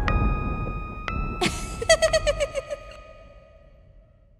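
Cartoon soundtrack music and effects fading out: a low rumble under held chime-like tones, a short whoosh about a second and a half in, then a quick run of short repeated notes that dies away before the end.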